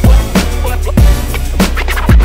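Instrumental hip hop beat built on violin-style strings, with a deep sustained bass and heavy kick drum hits about once a second, plus shorter drum strikes in between.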